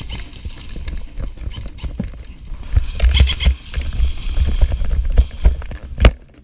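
Running footsteps on a concrete floor with gear and a rifle jostling against the body, a quick run of knocks and heavy thumps that gets louder and denser from about halfway through.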